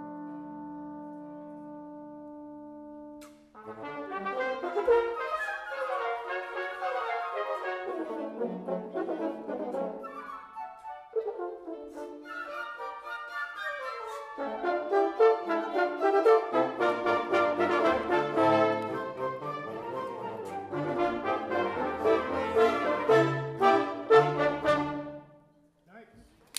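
Wind ensemble of woodwinds and horns, bassoon among them, playing under a conductor: a held chord that breaks off about three seconds in, then a lively passage of many quick notes that stops abruptly at the end.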